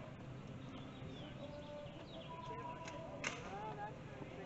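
Outdoor ambience with faint distant voices of people gathering. A short steady tone sounds a little after two seconds, and one sharp snap comes just after three seconds.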